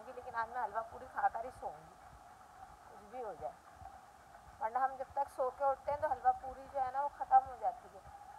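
A woman talking in short stretches, with a pause of about three seconds in the middle.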